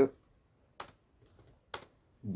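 Computer keyboard keystrokes: a few separate taps, one a little before the middle and a louder one near the end, with fainter ticks between.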